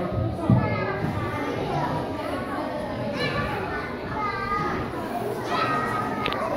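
A crowd of children talking and calling out over one another in a large hall, with a single knock about half a second in.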